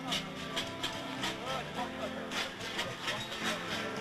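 A group of football players shouting and chanting together in a huddle, many voices overlapping with some held, drawn-out yells.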